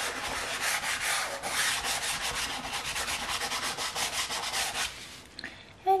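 White soft pastel held on its side and rubbed across paper in quick back-and-forth strokes, dying away about five seconds in.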